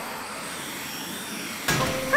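Cartoon rocket-thruster sound effect: a steady rushing jet noise from flaming rocket feet, with a sudden louder whoosh near the end.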